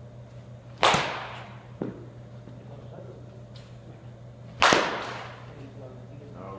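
Two sharp cracks of a baseball bat hitting pitched balls, about four seconds apart, each ringing on in a large hall. A fainter knock comes about a second after the first crack.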